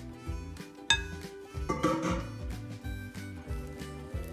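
Background music with a steady beat, over which a mixing bowl gives a single sharp, ringing clink about a second in. Whipped cream is then scraped out with a spatula, making a short soft scraping sound just before the two-second mark.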